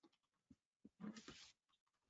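Near silence, with a few faint computer keyboard taps and a brief faint sound about a second in.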